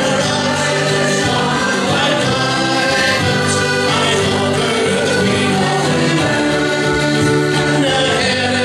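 Live folk band playing a song: several voices singing together over acoustic guitar, accordions and a hand-held frame drum, steady throughout.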